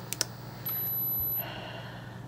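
Automatic blood pressure monitor finishing a reading: two quick clicks, then a steady sound lasting just under a second.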